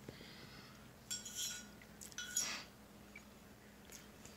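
A wine bottle being pulled out of its styrofoam shipping insert: two short squeaky rubs about a second apart.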